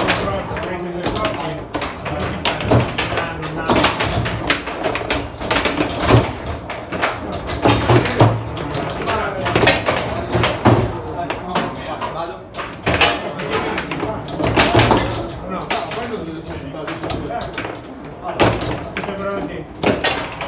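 Foosball table in play: repeated sharp clacks of the ball being struck by the figures and of rods knocking against the table, over indistinct talk from people around the table.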